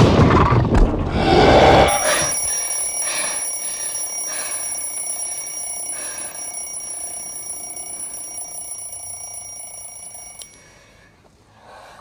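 A loud, noisy burst lasting about two seconds, followed by a steady, high, ringing sound made of several tones that slowly fades and cuts off suddenly about ten seconds in.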